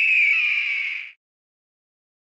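Bird-of-prey screech sound effect: one long cry that falls slightly in pitch and cuts off about a second in.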